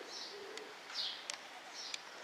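Small birds chirping in short, high, repeated calls, about two a second.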